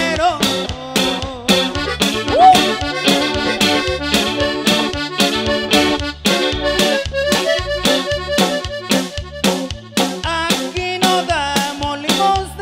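Live norteño band playing an instrumental passage: accordion carrying the melody over a steady dance beat of bass and drums.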